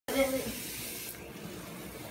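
Water spraying from a pull-down kitchen faucet sprayer onto dry ice in a sink, a steady hiss that softens about a second in.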